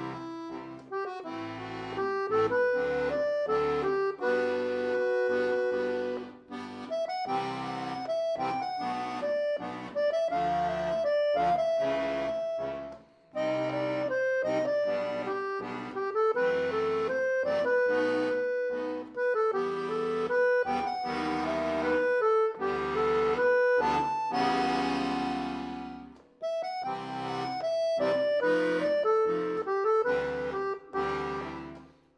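Accordion playing a rock ballad: a melody of held notes over bass and chord accompaniment, with a few short breaks between phrases.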